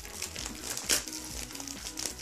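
Gift-wrapping paper crinkling and rustling as pet fancy rats climb over and tug at wrapped parcels in a cardboard box, in short irregular rustles with the loudest about a second in. Soft background music plays underneath.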